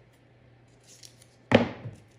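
Scissors and a roll of yellow tape being handled: a faint rustle about a second in, then one sharp rasp of tape and scissors about one and a half seconds in that fades within half a second.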